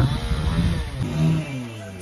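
A motor vehicle engine running close by, its pitch falling steadily.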